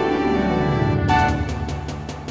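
Computer-sequenced orchestral music from DTM software: fast descending scale runs, then about a second in a held chord punctuated by repeated sharp strokes.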